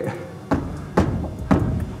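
Background music with a steady beat, about two drum hits a second.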